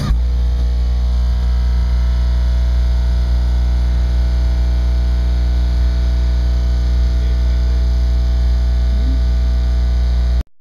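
A competition car-audio system's subwoofers playing a single steady, very loud low bass tone with evenly spaced overtones, held unchanged for the SPL run. It replaces the music-like sound right at the start.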